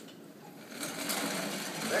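Sliding whiteboard panel rolling along its track, a continuous rattling rumble that starts about two-thirds of a second in.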